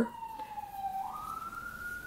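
A siren wailing in the background, one tone sliding slowly down and then rising again about halfway through.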